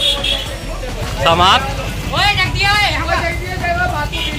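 Several people's voices talking and calling out in a street, over a steady low rumble like traffic or an idling engine.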